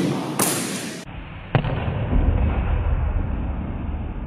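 A loud rushing noise in the first second cuts off abruptly. About one and a half seconds in comes a single sharp knock as the padded practice arrow meets the sword blade, over a steady low rumble.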